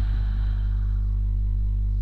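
Steady electrical mains hum: a low buzz with a ladder of overtones, unchanging throughout.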